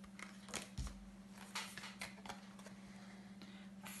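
Faint rustles and light taps of paper picture cards being handled and slid over a board, a handful of them within the first two and a half seconds, one a low thud about a second in, over a faint steady hum.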